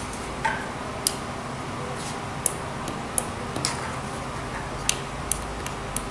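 A small tactile pushbutton on a breadboard clicking as it is pressed and released about ten times at an uneven pace, switching an LED on and off. The clicks are short and sharp over a steady low hum.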